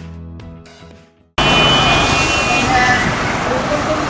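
Intro jingle music fades out, then about a second and a half in a loud, steady rushing of air starts abruptly: the air cooler's fan running close by.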